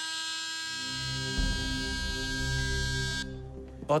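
Electric drill whining at a steady high pitch as it cuts into a helmet, spinning up at the start and stopping sharply a little after three seconds in, over a low pulsing music bed.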